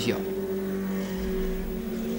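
Touring race car engines running at a steady, unchanging pitch, with a low rumble joining about halfway through.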